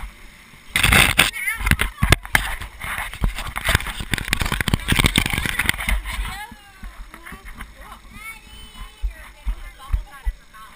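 Loud rough rubbing and scraping with a run of sharp knocks on a helmet-mounted camera as its wearer moves out of an inflatable bouncy castle, lasting about five seconds from just under a second in. Voices of people chatting follow.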